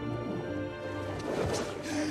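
Orchestral film score holding sustained chords. From about a second in, a rush of water splashing as a swimmer breaks the surface.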